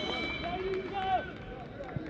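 Men's voices shouting and calling out on a football pitch, several overlapping, with no crowd noise behind them.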